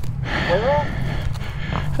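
Kawasaki dirt bike engine idling as a low, steady rumble. A brief rising vocal sound comes about half a second in.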